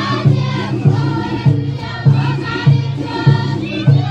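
Many voices singing together over a steady low drum beat, a little under two beats a second.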